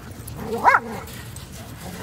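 A dog gives one short bark a little over half a second in, a play bark from dogs wrestling together.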